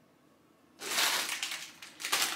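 A plastic snack packet crinkling and rustling as it is picked up and handled, starting just under a second in.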